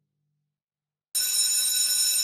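About a second of silence, then an electric school bell starts ringing suddenly, a steady high ringing that signals the end of class.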